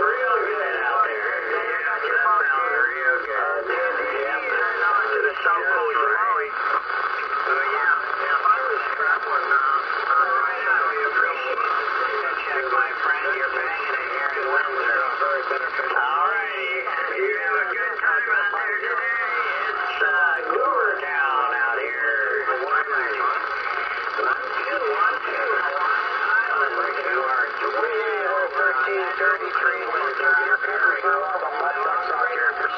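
Distant stations' voices coming through a Uniden Bearcat 980SSB CB radio receiving lower sideband on channel 38 (27.385 MHz). The sound is thin and tinny, several voices overlap without a break, and they are hard to make out.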